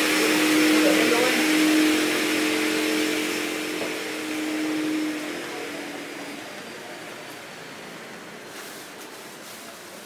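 Electric workshop machinery running, with a steady hum and a rushing noise over it, fading away over the first six or seven seconds.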